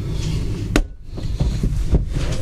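Handling knocks on a workbench as a cordless drill is brought in: a sharp click about three-quarters of a second in and a heavier thump near the end, over low handling rumble.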